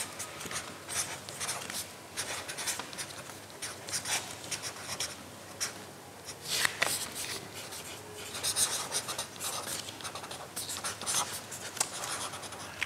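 Felt-tip pens writing on card: quick, uneven scratching strokes across the paper, a few of them louder than the rest.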